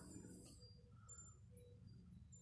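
Near silence: faint outdoor background with a low rumble and a faint, short high chirp about a second in.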